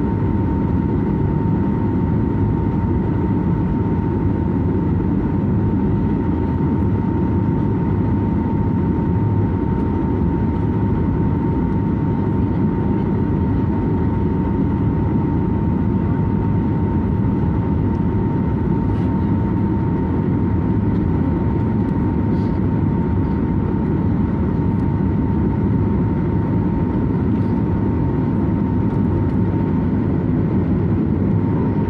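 Cabin noise of a Boeing 737 MAX 8 airliner on final approach: a steady deep rumble of engines and airflow, with a steady whine above it that holds one pitch throughout.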